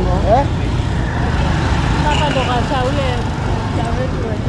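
Busy street traffic: a steady rumble of motorcycles, cars and lorries passing on the road, with passers-by talking over it.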